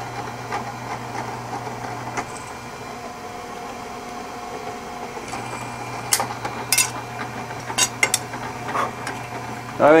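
Drill press running with a steady low hum while a twist drill bores a hang hole through a thin steel square. In the second half come several sharp metallic clicks and clatters from the bit and the thin workpiece.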